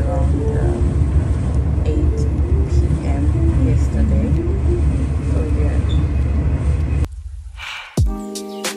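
Steady low rumble of a moving train heard inside the carriage, with indistinct voices talking under it; the rumble cuts off suddenly about seven seconds in.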